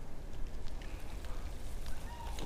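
Graupel (small snow pellets) starting to fall: scattered faint ticks of pellets landing, over a steady low rumble.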